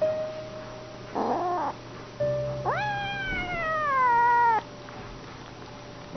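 Domestic cat meowing: a short meow about a second in, then a long drawn-out meow that rises sharply and slides slowly down in pitch over about two seconds before stopping abruptly.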